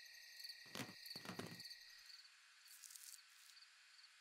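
Faint night ambience of crickets chirping in a steady, pulsing rhythm, with two brief soft knocks close together about a second in.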